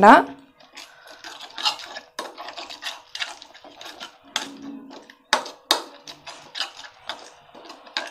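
A stainless steel spoon stirring curd into a thick spice paste in a bowl: irregular scrapes and clinks of the spoon against the bowl's sides, with two sharper clinks a little past the middle.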